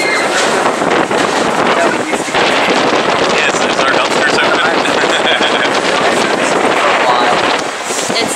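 Wind blowing across the camera's microphone: a steady, loud rush.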